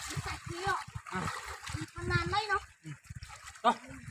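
Stream water splashing as a duck is grabbed and struggles in shallow water, with short shouted voices and calls over it and one loud sudden splash or hit near the end.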